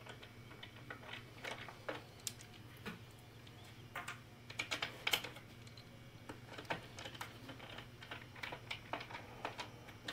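A screwdriver driving screws into a CD changer's plastic chassis, with irregular small clicks and taps of the driver, screws and plastic parts being handled, some in quick clusters.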